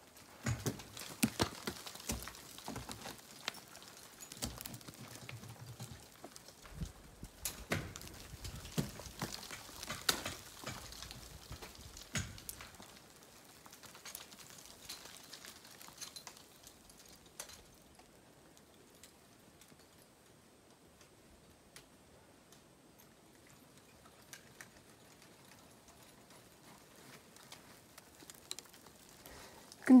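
Ice axes and crampons striking into frozen waterfall ice, heard from below as a scattered series of sharp knocks through the first dozen seconds or so, then only a few faint taps.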